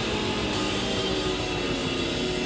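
A heavy metal band playing live, with distorted electric guitars, bass and drums. Cymbals crash and ride along in an even rhythm over the guitars.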